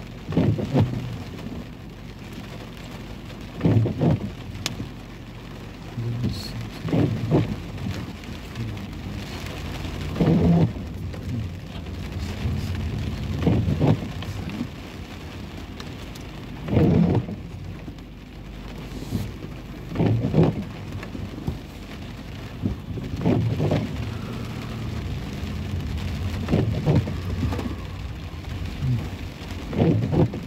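Steady rain drumming on a car's windshield and roof, heard from inside the cabin, with a low swishing thump about every three seconds from the windshield wipers sweeping on an intermittent setting.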